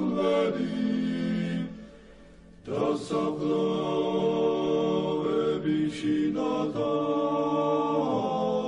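Orthodox church chant: voices singing long, held notes in a slow line. The singing breaks off for about a second, close to two seconds in, then resumes.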